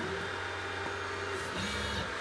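Stepper motors of a desktop diode laser engraver moving the laser head through an engraving job: a steady mechanical hum, dropping to a lower tone about one and a half seconds in.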